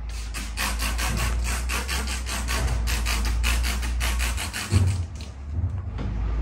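Fast, even rubbing by hand on the carbon-fibre headlight cover, about five strokes a second for some four seconds, as the cover's adhesive is pressed down; a single thump follows near the end.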